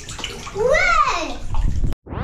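Bath water sloshing in a tub as children move in it, with a child's long vocal call that rises and then falls in pitch about halfway through. The sound cuts off suddenly just before the end.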